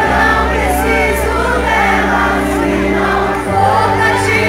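Christian worship music: a choir of voices singing over sustained bass notes, the bass moving to a higher note about three and a half seconds in.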